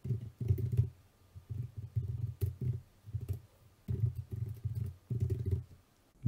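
Computer keyboard being typed on in about five quick bursts of keystrokes, with short pauses between them.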